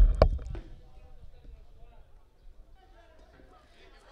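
Two sharp, dull thumps right at the start, then faint, distant voices of players on the pitch.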